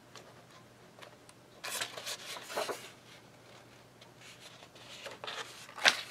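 Paper pages of a paperback coloring book being turned by hand: a papery rustle about two seconds in, a short one near the end, then a sharper slap of paper just before the end.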